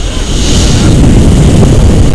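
Wind buffeting the action camera's microphone during tandem paraglider flight, a loud rumbling rush that grows stronger about half a second in as the glider banks into a steep turn.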